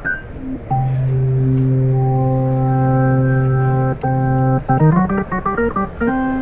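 Hammond Porta-B clonewheel organ played with percussion on: a chord held for about three seconds, struck again, then a quick run of short notes near the end.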